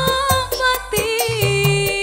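Live dangdut band: a woman singing over kendang hand drums, keyboard and electric guitar, with a quick steady beat of about four strokes a second and a long held note in the second half.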